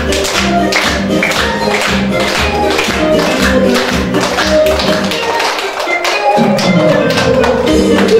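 Upbeat recorded music with a steady beat, with a group of young children clapping along in time. The bass drops out for about a second near the middle, then comes back.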